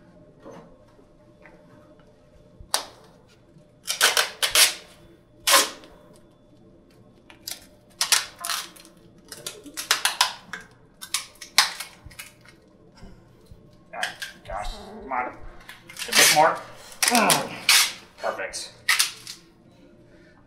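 Thin plastic bag crinkling in short, sharp bursts as it is handled, with a faint steady hum underneath.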